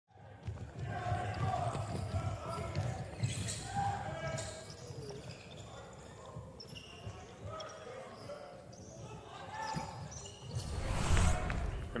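A basketball dribbling on a hardwood court, with faint voices in the background.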